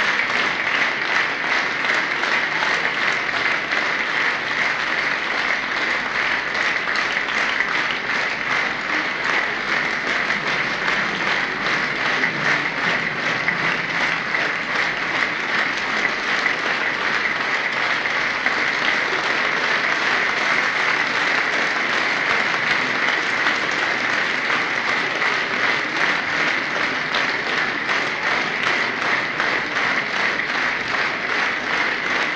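A large audience applauding, a dense and steady clapping that holds without a break.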